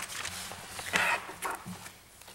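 Papers rustling and shuffling in a small meeting room as people handle their meeting packets, with a short, sharp noise about a second in.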